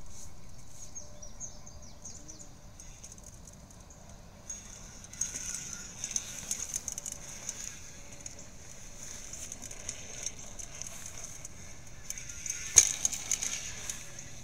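Quiet outdoor ambience picked up by a phone microphone: a faint, steady high-pitched hiss with scattered small rustles and clicks, and one sharp knock a little before the end.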